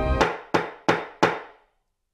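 Soundtrack music breaks off and four sharp percussive strikes follow, evenly spaced about a third of a second apart, each ringing out briefly.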